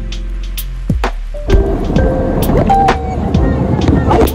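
Background music, then about a second and a half in, a loud rush of water as an inflatable tube slides down an enclosed water slide.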